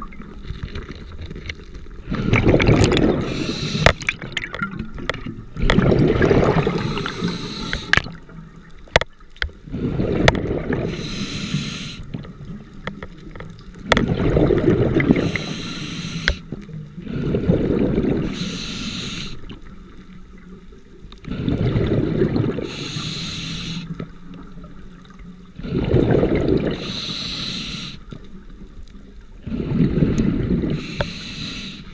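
Scuba diver breathing through a regulator underwater: a burst of exhaled bubbles about every four seconds, with a short high hiss between some of the bursts.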